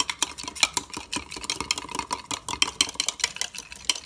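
A metal spoon stirs oil-and-lemon dressing briskly in a small glass measuring cup. The spoon clinks and scrapes against the glass in a quick, irregular run of clicks.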